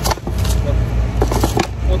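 Steady low drone of the motor yacht's engines running under way. Over it come a few short clicks and rattles as a clear plastic jug holding sand and shells from the engine cooling-water filter is handled.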